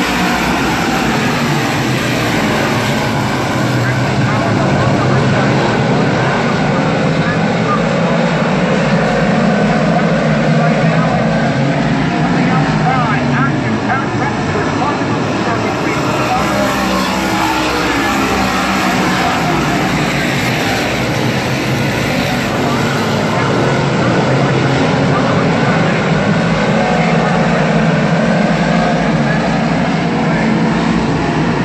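A field of 358 Modified dirt-track race cars, small-block V8s, running laps together in a continuous loud engine noise whose pitch rises and falls as the cars accelerate off the turns and pass.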